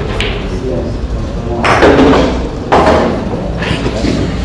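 A pool shot: a sharp click of the cue striking the cue ball just after the start, then two louder knocks about a second apart later on, as the orange ball is potted.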